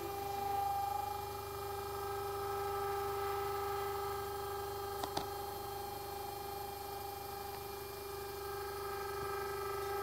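Smoothieboard-controlled 3D printer running, giving a steady whine with higher overtones that swells a little at times, and two quick clicks a little after five seconds in.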